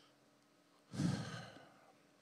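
A man's sigh, a loud breath out into a handheld microphone close to his mouth, starting suddenly about a second in and fading away within a second.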